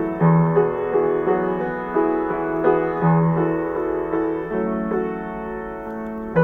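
Solo grand piano playing a slow melody over sustained bass notes, with a new bass note struck every second or two.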